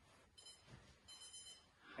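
Digital stopwatch timer alarm beeping faintly in two short high-pitched bursts, signalling the end of a 20-second timed exercise set.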